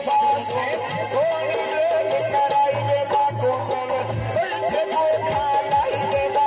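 A man singing a Punjabi folk gawan song with a wavering, ornamented melody into a microphone, amplified through loudspeakers, with tabla accompaniment.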